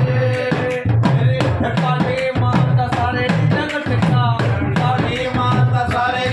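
Devotional bhajan played live: deru drums beaten in a steady, driving rhythm under a singing voice.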